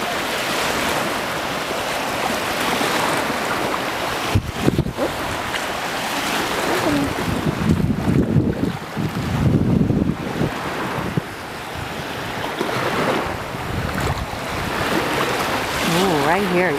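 Small waves washing around the ankles in shallow surf, with wind rumbling on the microphone. The rumbling is heaviest about eight to ten seconds in.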